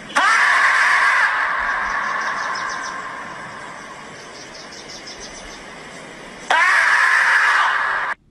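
Marmot screaming: one long call that starts suddenly and fades away over about three seconds, then a second long scream that starts about six and a half seconds in and cuts off at the end.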